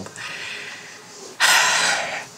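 A man's sigh: one short, breathy exhale about a second and a half in, lasting about half a second.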